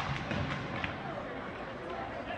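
Ice hockey game sounds in a rink: a sharp knock at the start and a few lighter clacks of sticks and puck, over spectators' voices and rink hubbub.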